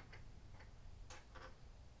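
Near silence: faint background noise with a few soft, scattered ticks.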